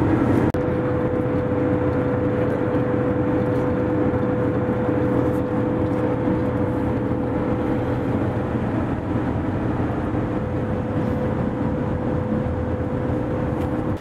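Road and engine noise inside the cabin of a vehicle cruising at highway speed while towing a car trailer: a steady drone with a constant high hum running over it from about half a second in.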